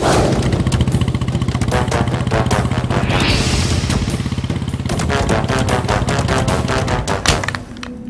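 Motorcycle engine running as the bike rides along: a rapid, even thumping from the exhaust. It falls away near the end, just after a single sharp knock.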